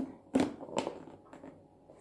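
Two light knocks about half a second apart, from glass food containers being handled on a kitchen counter.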